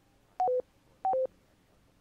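Two short electronic beeps about two-thirds of a second apart, each a higher tone stepping down to a lower one.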